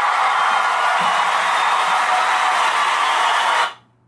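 A steady hiss of noise that fades out quickly near the end.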